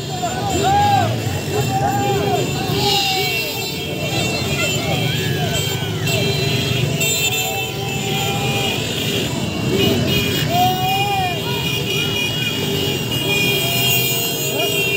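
A street crowd shouting and cheering in overlapping voices over running motorcycle engines, with steady high-pitched horns sounding.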